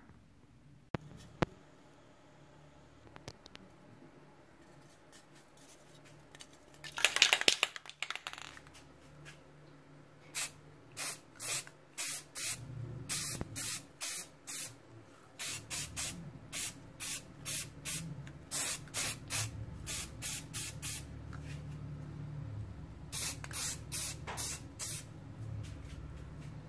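Aerosol spray can of primer hissing in many short bursts, about two a second, from about ten seconds in, with a pause of about two seconds before a last few bursts. A single louder burst of noise comes about seven seconds in, and a faint low hum runs underneath.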